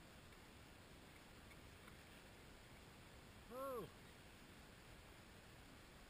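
Near silence, broken once about three and a half seconds in by a short voice sound from a person that rises and then falls in pitch.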